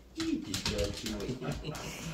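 A dog whining in a string of soft, wavering pitched calls, its 'singing' greeting to its owner.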